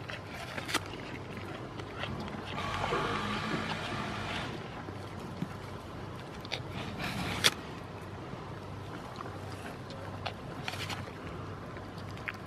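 Steady drone of loud machinery, swelling for a couple of seconds a few seconds in. Over it come a few sharp crunches as goats bite into an apple held out by hand.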